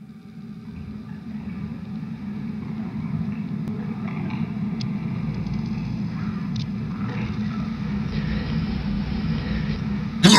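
A low, steady rumbling drone that fades in from silence and slowly grows louder, with faint hiss above it and a few faint clicks. It works as an ambient intro bed building up to the song.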